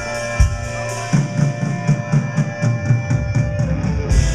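Live rock band playing an instrumental passage: sustained electric guitar over a drum kit, with a quick run of drum strokes, about six a second, from about a second in until near the end.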